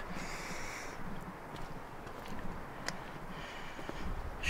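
Faint outdoor background with light wind on the microphone and a few soft clicks of footsteps on stone steps.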